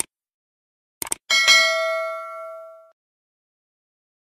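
A click, then two quick mouse-style clicks about a second in, followed by a bright bell ding that rings and fades out over about a second and a half: a subscribe-button and notification-bell sound effect.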